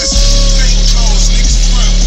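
Car audio subwoofers playing deep, steady bass at very high volume, enough to blow hair about at the open window. The bass cuts back in just after the start following a brief drop-out.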